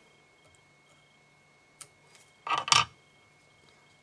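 Quiet room tone with a faint hum, a single faint click about two seconds in, and a brief, louder clatter of handling noise just after, as tools and materials are handled at a fly-tying vise.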